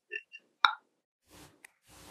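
A short pause in speech filled with faint mouth noises: two small smacks, a sharp click about half a second in, then a soft breath drawn in before speaking resumes.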